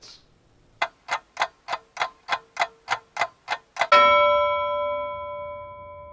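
Clock-style ticking, about three ticks a second for three seconds, then a loud bell ding that rings and fades: a timer sound marking the wait for the chart update to finish.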